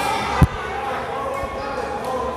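A single sharp, deep thump on the wrestling ring's floor about half a second in, with a much fainter one about a second later, over voices in a large hall.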